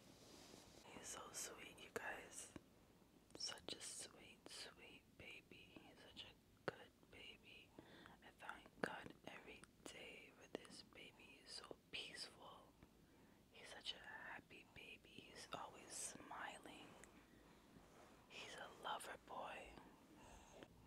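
Faint, hushed whispering in short phrases, on and off throughout, with soft hissing sounds.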